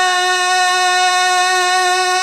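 A male naat singer holding one long, steady sung note into a microphone.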